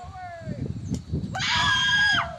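A person screaming on a thrill ride: a falling shout at the start, a low rumble in the middle, then a loud, high, held scream from about one and a half seconds in.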